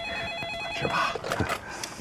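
Corded desk telephone ringing with a rapid electronic warble, stopping a little over a second in.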